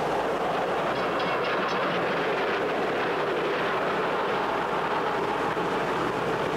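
Electric streetcar running along its rails: a steady rumble and rattle of wheels on track.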